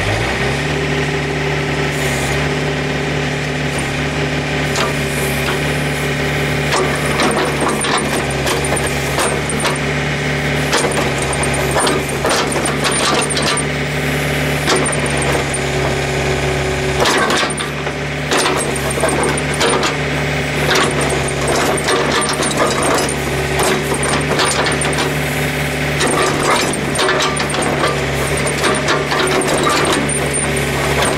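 John Deere 110 backhoe's diesel engine running at high revs under hydraulic load as the ripper tooth drags through frozen ground, with frequent cracks and knocks of frozen soil breaking up. The engine comes up to revs right at the start and eases briefly a little past halfway.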